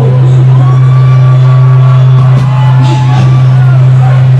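Live band music at high volume, dominated by a steady low bass drone held throughout, with a few long sustained higher notes over it.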